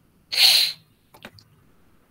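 A person sneezing once, a short loud burst about a third of a second in, followed by a couple of faint clicks.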